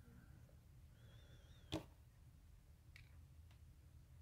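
Near silence: quiet room tone with a faint low hum, broken by one sharp click a little under two seconds in, just after a faint, brief wavering squeak.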